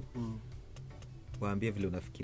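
A man's voice speaking in short bursts over a low background music bed with a bass line.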